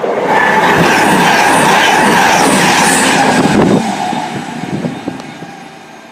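CrossCountry Voyager diesel multiple unit passing at high speed: a loud rush of engine and wheel-on-rail noise with a steady tone running through it, which drops off sharply about four seconds in and then fades as the train recedes.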